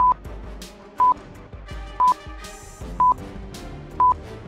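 Countdown timer sound effect: a short, high electronic beep once a second, four beeps in all, over quieter background music.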